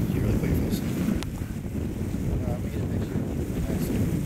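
Wind buffeting the camera microphone, a loud, steady low rumble, with a faint voice breaking through briefly a couple of times and a single sharp click about a second in.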